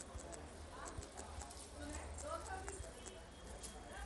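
Faint, quick taps of typing on a smartphone's on-screen keyboard, a string of short clicks as a name is keyed in letter by letter.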